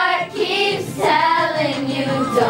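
A group of children singing a pop song together over music, with a short break between phrases just after the start.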